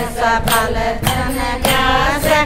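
A group of women singing a Haryanvi devotional bhajan together in a chanting style, clapping their hands in steady time at a little under two claps a second.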